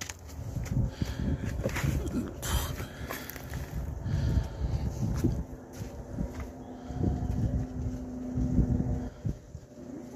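Irregular low rumbling of wind and handling noise on a handheld phone's microphone, with a few scattered knocks and, in the second half, a faint steady hum.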